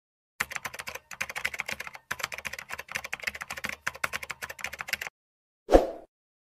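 Rapid computer-keyboard typing clicks in several quick runs with short pauses, followed by one short, louder swish near the end.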